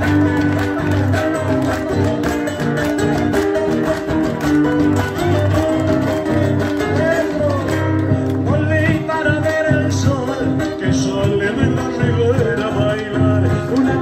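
Instrumental passage of an Argentine folk song: guitar playing over a strong, pulsing bass line.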